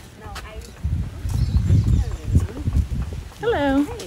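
Short snatches of a voice, one near the start and a stronger one near the end, over a low rumble with irregular thuds.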